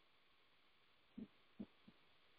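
Near silence with a faint hiss, broken by three faint, short low thumps in the second half, about a third of a second apart.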